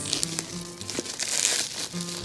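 Bubble wrap crinkling as it is handled and pulled off a glass jar, loudest about a second and a half in, with background music underneath.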